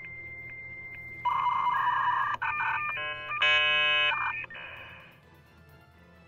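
Short electronic transition jingle: a steady high beep, then a run of stepped synth tones ending in a louder held chord that fades out about five seconds in.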